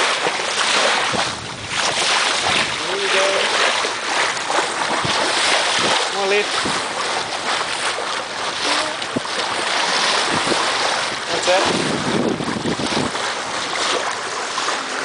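Wind buffeting the microphone over the rush of water along the hull of a Farr 6000 trailer yacht sailing under spinnaker, coming in gusts.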